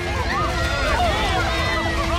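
Animated stampede of longneck dinosaurs: a continuous low rumble of heavy running footfalls, under overlapping alarmed cries from several voices.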